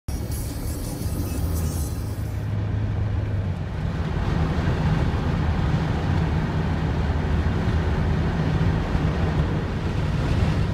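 Semi-truck diesel engines droning with road and tyre noise, heard from inside a moving car. The hiss in the treble drops away about two and a half seconds in.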